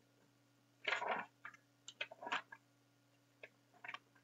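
Paper picture-book pages rustling as the book is opened and leafed through: a longer rustle about a second in, then a few short flicks and taps. A faint steady electrical hum lies underneath.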